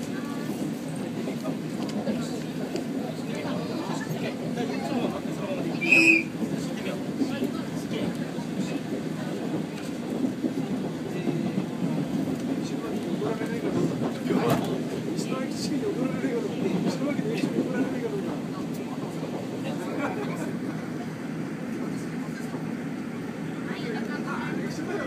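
Train running along the line, heard from inside the carriage: a steady rumble from the wheels on the rails, with passengers' voices in the background and a brief high-pitched sound about six seconds in.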